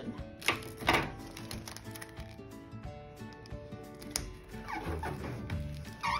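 Background music with held notes, over clear packing tape being pulled off its roll: two sharp rips about half a second and a second in, and another near four seconds.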